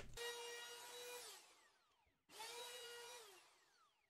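A handheld wood router running in two short, faint bursts. Each burst is a high steady whine that drops in pitch as the motor winds down after it is switched off, and the second burst rises in pitch as the motor spins up.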